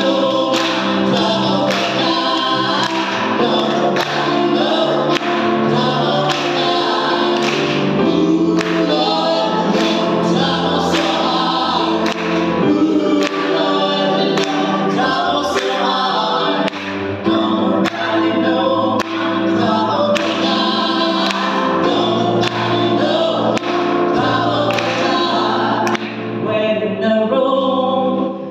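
Small gospel vocal group, two women and a man, singing in harmony over keyboard accompaniment, with hand claps keeping the beat.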